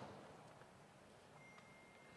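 Near silence: faint room tone, with a thin, steady high tone, like a faint beep, in the last half second.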